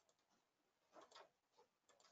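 Near silence: room tone, with a few faint short clicks about a second in.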